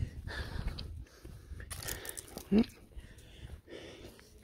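A woman breathing hard close to the phone microphone, winded from walking uphill behind a pulling dog, with a brief knock about halfway and a short murmured "mm".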